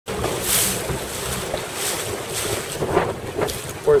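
Wind buffeting the microphone over open water, with the wash of waves, in gusts that swell about half a second in and again near two seconds.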